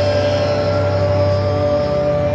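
Rock music: a sustained, droning held chord over a steady low bass note, with no drum beat.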